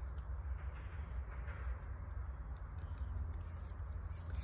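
Quiet background noise: a steady low rumble with a faint haze above it and a few faint light clicks near the start.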